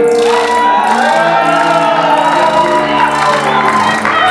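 Live band music with a bowed cello and guitars holding long notes, a couple of them sliding up in pitch, with audience voices whooping and cheering over it.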